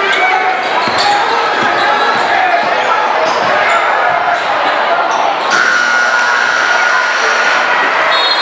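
Gym crowd chatter with a basketball being dribbled and sneakers squeaking on the hardwood. About five and a half seconds in, a steady tone sounds for about two seconds, typical of the scoreboard horn ending the period.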